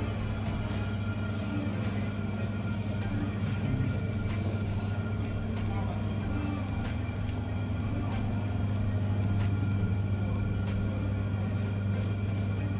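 Steady electrical hum of supermarket refrigerated display freezers, a low drone with a few fixed higher tones, broken by faint, evenly spaced ticks a little more than a second apart.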